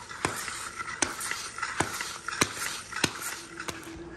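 Red plastic extension-cord reel being handled on a concrete garage floor, with a sharp knock or clunk about every two-thirds of a second over a light scraping hiss.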